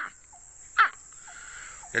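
A man imitating a baby crocodile's call with his voice: a short, high chirp that falls sharply in pitch, heard once clearly about a second in, just after the tail of the previous one. The call is meant to mimic a hatchling, and he warns it may draw adult crocodiles near, though he is not sure.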